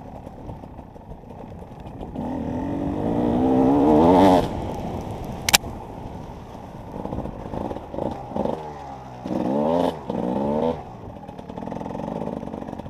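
Enduro motorcycle engine under way, revving up in one long rising pull for about two seconds before the throttle drops off. A single sharp knock comes about halfway through, then several short bursts of throttle near the end.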